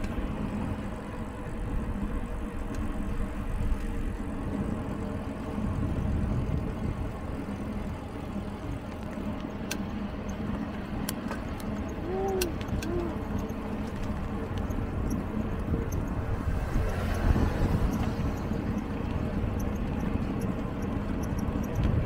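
Steady wind rumble on the microphone and tyre noise from a mountain bike rolling over asphalt, with a few sharp clicks near the middle.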